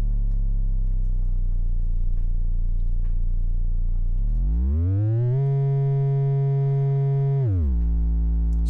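Noise Reap Foundation Eurorack kick drum module's oscillator running free as a deep sine tone. It holds a steady low pitch, glides up about four seconds in as the tune is turned, holds the higher pitch, then glides back down shortly before the end.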